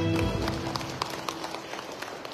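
The held final chord of the backing music dies away in the first half-second. It is followed by quick, irregular footsteps of hard shoes on a stage floor.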